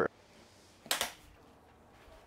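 Two short, sharp knocks in quick succession about a second in, against quiet room tone.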